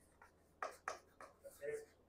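Chalk writing on a chalkboard: a few short, faint scratching strokes as a word is written out by hand.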